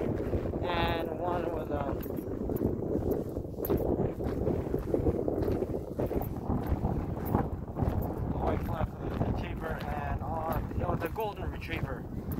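Wind rumbling on a phone microphone and footsteps of a person walking, with short stretches of a man's voice about a second in and near the end.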